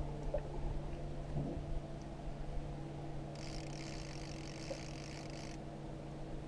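Small outboard motor running steadily at low trolling speed, an even hum. A brief hiss joins it for about two seconds in the middle.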